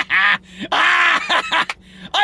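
Men laughing hard in high-pitched, breathless bursts, three of them with short catches of breath between.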